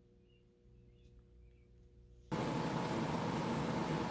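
Near silence with a faint hum, then a little over halfway through a steady hiss of a livestream's microphone background noise cuts in suddenly and holds, as the stream's audio comes back on.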